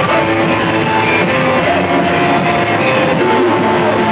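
Garage punk band playing a take: electric guitar with the rest of the band, loud and unbroken.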